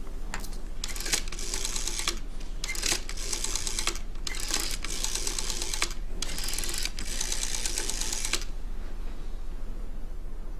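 Black rotary desk telephone being dialled: four times the dial spins back with a quick run of clicks, each lasting one to two seconds, with short pauses between digits.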